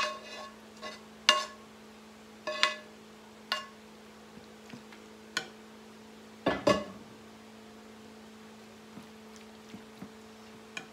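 A metal spoon knocking and scraping against a skillet as food is scraped out into a baking dish: a handful of sharp, ringing clinks spaced about a second apart, then a louder clunk about six and a half seconds in. Afterwards only a steady low hum.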